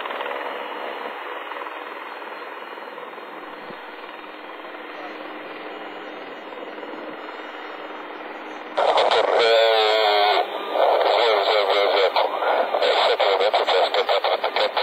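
Air-band radio receiver: a steady thin hiss of static, then about nine seconds in a loud, narrow-sounding voice transmission cuts in and runs choppily on.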